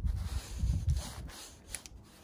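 A metal ratchet-strap buckle being handled and worked: low rubbing handling noise for about a second, then a few faint light clicks from the mechanism.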